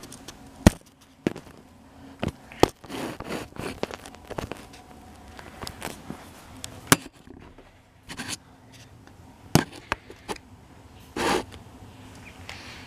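Handling noise as a camera and airsoft gear are moved about and set down on a carpeted floor: several sharp clicks and knocks, a second or more apart, between short stretches of rustling.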